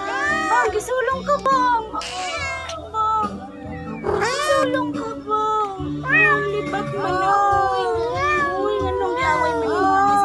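Two domestic cats caterwauling at each other in a territorial standoff: long, wavering yowls that slide up and down in pitch, overlapping almost without a break. Two short hisses cut in, about two seconds in and again around four seconds.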